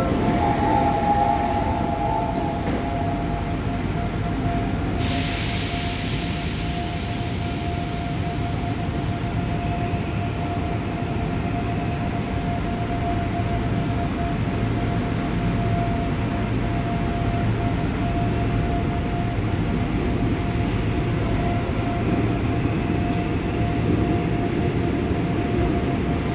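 A new Seoul Line 5 subway train with PMSM traction motors, heard from inside the passenger car while it runs: a steady low rumble of the ride with a constant hum over it. About five seconds in, a loud hiss comes up for about three seconds.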